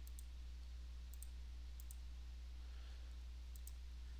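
Four light computer-mouse clicks, each a quick double tick of button press and release, spread across a few seconds, over a steady low electrical hum.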